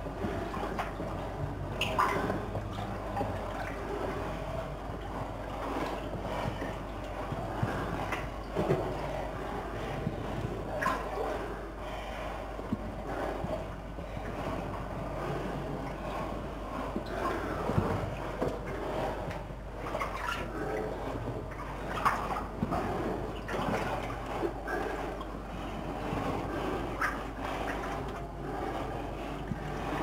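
Water sloshing and splashing in irregular bursts as people wade through a flooded, brick-arched mine tunnel.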